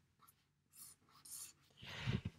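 Faint scratching of a Tombow felt-tip pen on paper as a box is drawn around the written answer: a short stroke a little under a second in, then a longer one around a second and a half.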